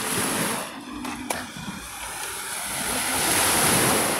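Small sea waves breaking and washing up a sandy beach, swelling to their loudest near the end. A single sharp click about a second in.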